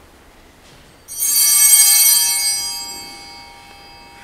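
Altar bells rung once, about a second in: a sudden bright, high ring that fades away over about two seconds.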